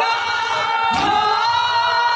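A group of men singing a noha, a Shia mourning lament, in unison on long held notes. About a second in there is one sharp slap as the mourners beat their chests together in matam.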